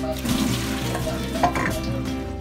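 Wet chopped daikon radish and its water tipped from a stainless steel bowl into a plastic colander, splashing and sloshing as the water drains off, with a louder splash about one and a half seconds in. Background music plays underneath.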